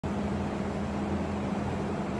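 Steady low machine hum: a drone with one constant tone in it, the background noise of ventilation or other running equipment.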